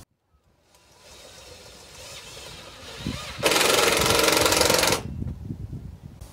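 A loud burst of rapid mechanical rattling lasting about a second and a half, near the middle, after a second or two of quieter rising noise.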